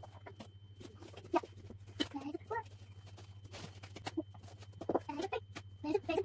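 Cardboard floor-puzzle pieces clicking and tapping on a laminate floor as a small child handles and fits them. The child makes a few short vocal sounds about two seconds in and again near the end.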